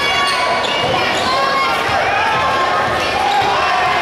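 Basketball bouncing on a hardwood court during play, in a large gym full of crowd chatter and voices.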